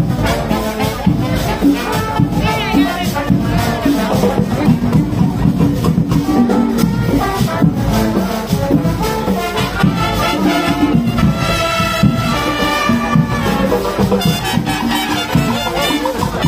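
Live marching band playing an upbeat Latin dance tune, with brass over a steady beat of drums and percussion.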